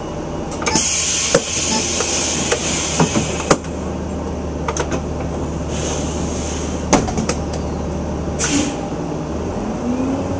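A vehicle's engine idling, heard from inside the cab as a steady low hum, with scattered clicks and knocks and a few short bursts of hiss. Near the end the engine note briefly rises and falls.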